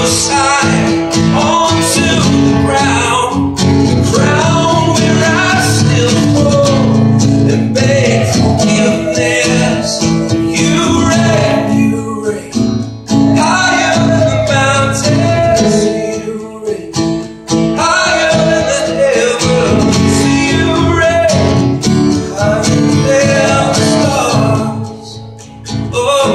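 Acoustic guitar strummed steadily, with a man singing over it, the playing easing back briefly twice partway through.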